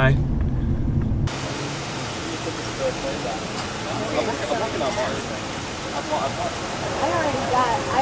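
Low rumble inside a car for about the first second, then an abrupt cut to a steady hiss of street and traffic noise, with faint voices from about three seconds in.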